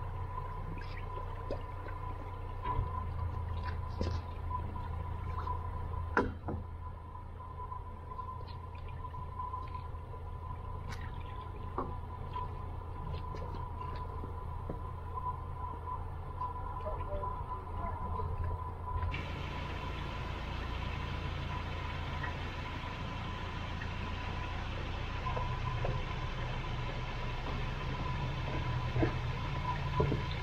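A narrowboat's engine runs slowly with a low, steady hum under water pouring and splashing around the boat. A few sharp knocks stand out near the start.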